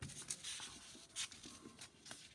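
Sheets of drawing paper rustling and sliding as they are handled, with a sharper rustle about a second in.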